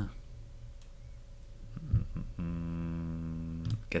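A mouse click about halfway through, then a man's low voice holding one steady, drawn-out hesitation hum for about a second and a half.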